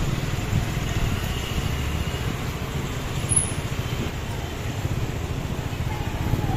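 Busy market-street traffic noise: motorcycles and scooters running close by, a steady low rumble.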